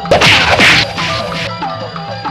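Traditional Burmese ringside music for a lethwei bout: a wind-instrument melody with gliding notes over a steady drumbeat, broken by two loud crashing clashes in the first second.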